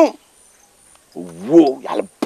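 A person's voice: after a short pause, one drawn-out vocal sound rises and falls in pitch for under a second.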